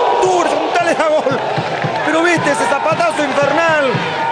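A male football commentator's excited, drawn-out exclamations reacting to a shot off the crossbar, with no clear words.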